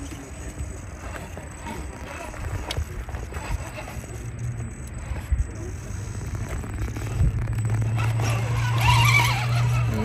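Scale RC rock crawler's electric motor and geared drivetrain humming steadily as the truck climbs, growing louder toward the end, with scattered knocks of the tyres and chassis on the rock.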